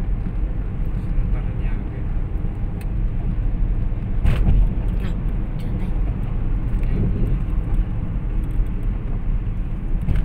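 Steady low rumble of engine and tyre road noise heard from inside a moving car's cabin, with a sharp knock about four seconds in.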